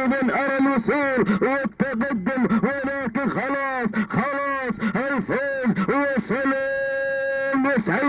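A man's excited race commentary, delivered fast and continuously with rising and falling pitch. Near the end it breaks into one long held call.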